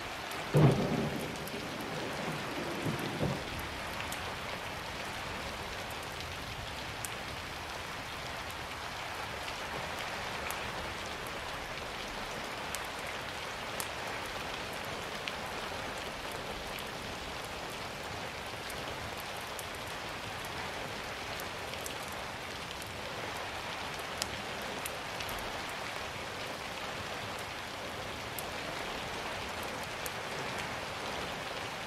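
Rain-and-thunder ambience recording: steady rain falling throughout, with a clap of thunder about half a second in that rumbles away over the next three seconds.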